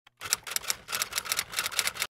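Typewriter keystroke sound effect: a rapid, uneven run of sharp key strikes, several a second, that stops abruptly.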